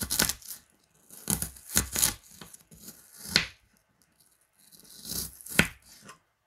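A knife slicing through a raw peeled onion on a plastic cutting board. Each cut is a crisp, wet crunch ending in a knock of the blade on the board, in uneven strokes with a quiet pause in the middle.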